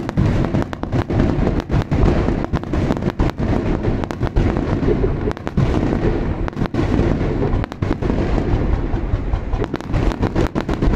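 Aerial firework shells bursting in rapid, closely packed succession, a continuous run of loud bangs with hardly a gap between them.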